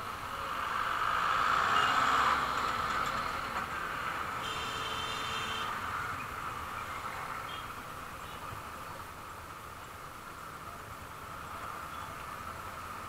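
Street traffic noise heard from a motorcycle creeping through congested traffic: a steady rushing hiss that swells over the first couple of seconds. A vehicle horn sounds once, for about a second and a half, near the middle.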